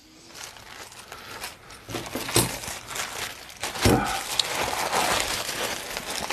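Plastic mailer packaging rustling and crinkling as it is handled, with a couple of light knocks.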